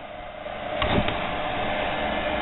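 Steady whir of an electric motor with its small cooling fan running. It grows louder over the first second or so, then holds, with two light clicks about a second in.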